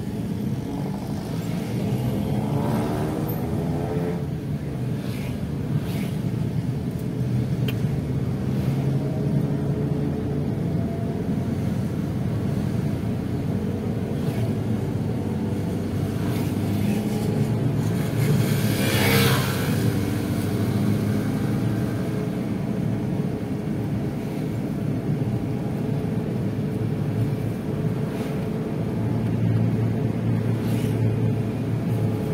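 Steady engine and road noise from a vehicle riding through light town traffic, with motorcycles around it. Early on, a passing engine's pitch falls. A vehicle passes close with a brief swell a little past halfway.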